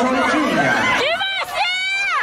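Several people chattering at once, then from about a second in high-pitched excited voices calling out.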